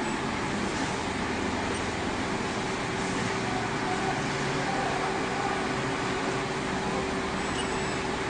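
Steady machine hum in the room, with a faint steady tone running through it.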